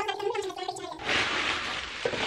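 Pink tissue paper rustling as it is pulled out of a cardboard box, a continuous crackly rustle starting about a second in.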